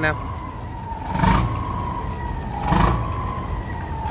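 Boat engine running steadily: a low rumble with a thin, steady high whine over it, and two brief louder rushes about a second and a half apart.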